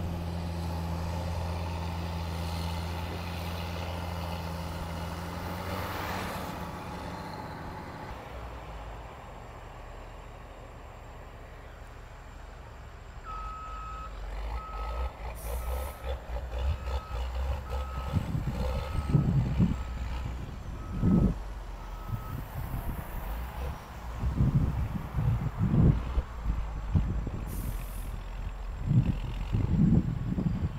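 Caterpillar motor graders' diesel engines running while they push and spread dirt: a steady hum at first, then heavy, uneven rumbling that surges up and down under load. About halfway through, a reversing alarm beeps about nine times at an even pace.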